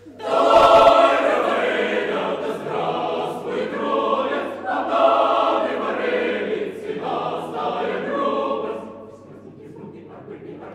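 Mixed chamber choir singing a cappella, coming in loudly all together just after the start and holding full sung chords, then dropping to a softer passage near the end.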